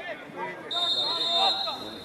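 A referee's whistle blown in one long, steady blast starting under a second in, over men's voices calling out on the pitch.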